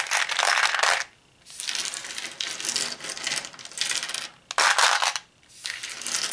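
Many tiny plastic miniature toys clattering and rattling against each other and a clear plastic box as they are pushed and packed in by hand, with two brief pauses.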